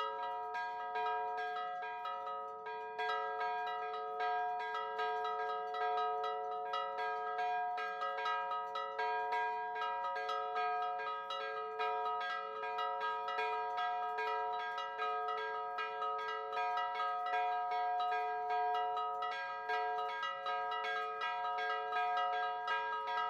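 Four church bells, tuned B, A-flat, E and D, ringing a Maltese solemn peal (mota solenni): quick, continuous strokes that overlap so the bells' tones sound together without a break.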